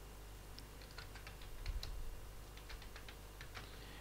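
Computer keyboard typing: a quick, irregular run of light key clicks, about a dozen of them, starting about half a second in and stopping shortly before the end.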